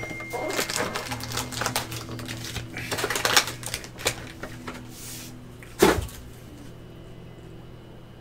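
A cardboard trading-card box being opened and its foil card packs pulled out and handled: a busy run of crinkling, rustling and small taps for about four seconds, then one louder thump a little before six seconds, after which it goes quieter.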